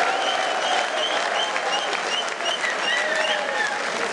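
Audience applauding, the clapping going on without a break, with a few voices calling out over it.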